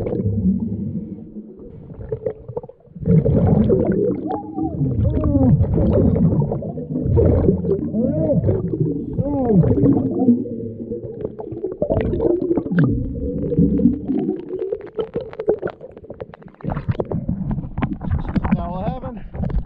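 Underwater sound of scuba breathing: the regulator's exhaled bubbles bubbling and warbling in quick rising and falling tones over a low rumble, easing off briefly about two seconds in and again near the end.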